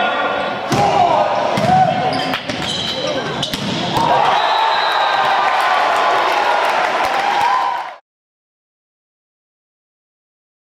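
Volleyball rally: a string of slaps of hands and arms on the ball through the first four seconds, then players' long shouts and cheering after the point. The sound stops abruptly about eight seconds in.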